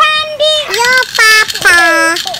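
A child's high voice singing a nursery-rhyme tune in about five held notes, each with a short break between.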